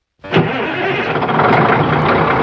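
A semi truck's diesel engine starting up: a sudden burst about a quarter second in, then the engine running loudly and steadily.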